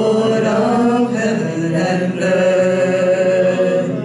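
Worship band music: several voices singing long held notes together over guitar accompaniment.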